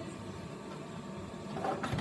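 Steady whir of the small suction fan in a toy wall-climbing remote-control car, running to hold the car against a door.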